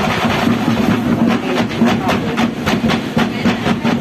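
Drum-cheer percussion: drums beating a fast, steady rhythm of about four strokes a second, loud, with voices from the crowd and performers underneath.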